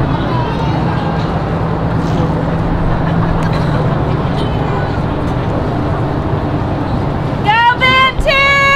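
Steady outdoor stadium ambience: a low rumble with faint, distant voices. About seven and a half seconds in, a loud, sustained high-pitched call starts, its pitch bending at the onset.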